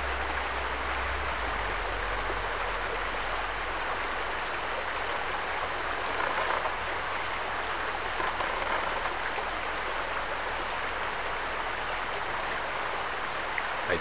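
Shallow creek water running steadily over gravel and stones, with a couple of brief louder water sounds around the middle.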